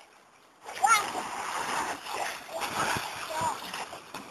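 Water splashing as a small child wades in shallow water, starting about a second in, with a high-pitched squeal from the child at the onset and a shorter call near the end.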